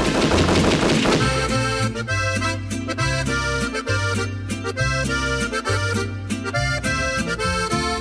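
Norteño corrido band playing an instrumental passage: accordion lead melody over a stepping bass line and rhythm. A dense burst of noise fills about the first second.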